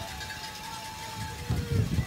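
Open-air football stadium ambience: a faint steady held tone that drops to a lower pitch about a second and a half in, with a burst of low rumbling near the end.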